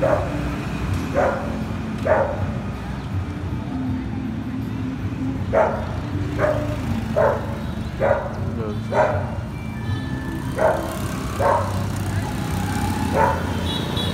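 A dog barking repeatedly, about ten short single barks mostly around a second apart, with a few seconds' pause early on. Under the barks runs the steady low hum of motorbike traffic.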